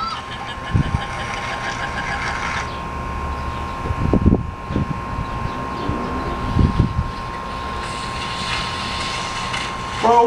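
Sound of a clip playing on a phone: a motorbike running through mud, heard as a continuous rumbling noise with a few heavy thumps, under a steady high tone.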